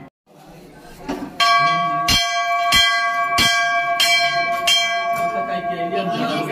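A Hindu temple bell struck repeatedly, about six strikes at roughly one and a half a second, starting about a second and a half in, each strike leaving a sustained, steady ring.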